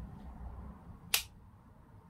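A wall light switch clicks once, about a second in, switching on an LED tube light.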